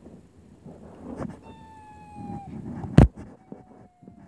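Two long, high-pitched calls, each held on one note and falling slightly in pitch, the second a little lower. Between them, about three seconds in, comes a single sharp, loud knock or clap.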